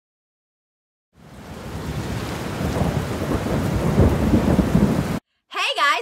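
Thunderstorm sound: a steady rain-like hiss with deep rumbling. It fades in after about a second, swells to its loudest about four seconds in, and cuts off suddenly a little after five seconds.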